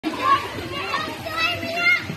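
Children's high voices calling and chattering, with louder shouts near the start and the end.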